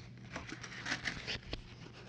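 Cardboard and plastic packing material being handled: a run of light rustles, crinkles and small taps, with a sharper tap about a second and a half in.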